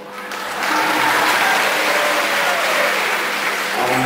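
Audience applauding, building up within the first second and holding steady.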